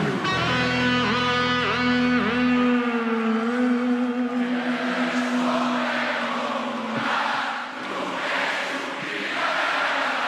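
Live rock music: a held electric guitar note that dips in pitch a few times, over bass, for the first few seconds. Then the band thins out and a large crowd singing along takes over.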